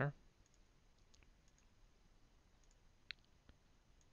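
A few faint computer mouse clicks over near-silent room tone. The sharpest comes a little after three seconds in, with a weaker one just after it.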